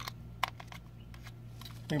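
Small clicks and taps of fingers working the battery wire and balance plug into the plastic battery bay of a Blade 200QX quadcopter, with one sharper click about half a second in, over a faint steady low hum.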